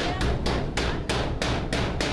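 Hammering on a sheet-metal door: a quick, even run of sharp metal blows, about three a second.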